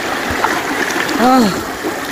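A shallow, rocky mountain stream rushing steadily, splashing around a person's feet standing in the current.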